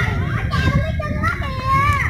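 Children's voices, talking and calling out as they play, high and rising and falling in pitch, over a low rumble.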